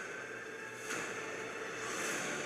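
Film trailer soundtrack: an airy, hissing ambient sound-design bed with faint steady tones, swelling in two brief noisy surges, about a second in and again at the end.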